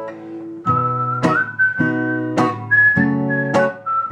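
Acoustic guitar strummed in a steady rhythm, just under two strums a second. From about half a second in, a whistled melody runs over the chords, holding notes that step up and then down.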